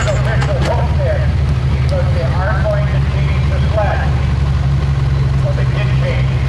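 The 1985 Chevrolet pickup's stock gasoline engine idling steadily at the end of its pull. People's voices can be heard talking over it.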